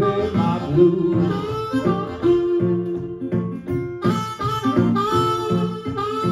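Blues harmonica soloing in long held, bending notes over a strummed resonator guitar, the harmonica's line jumping higher about four seconds in.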